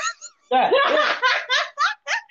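A woman laughing hard: a run of quick, loud laughs that starts about half a second in.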